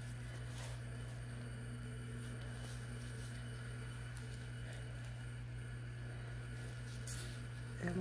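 Steady low hum of an electric tumbler spinner's motor slowly turning a resin-coated cup, with a couple of faint rustles from wiping.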